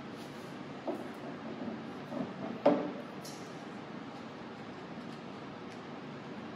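Handling noises from a camera tripod being adjusted: a light knock about a second in, a few small rattles, then one sharp loud clack near the middle as the centre column is repositioned, over steady room hiss.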